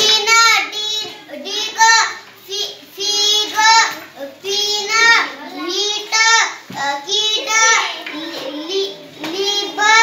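A young girl's voice chanting word readings aloud in a high, sing-song rhythm, short phrase after short phrase.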